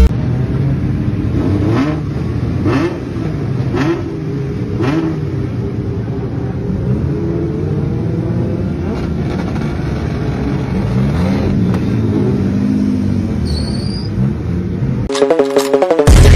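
Drift cars' engines idling and being revved on the start grid, the engine note rising and falling several times over a steady running rumble. Near the end it cuts abruptly to electronic music.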